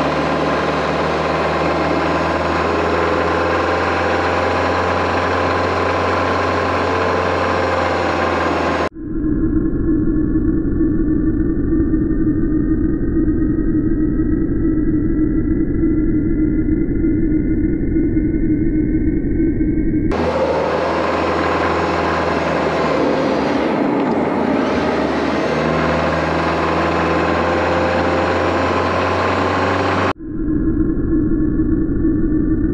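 A car's engine and road noise heard while driving, in three stretches joined by sudden cuts about 9 and 20 seconds in. In the middle stretch a whine rises slowly and steadily in pitch.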